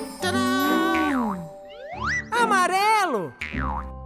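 Children's cartoon soundtrack: light music with springy boing effects and swooping pitch glides, one sliding steeply down near the end.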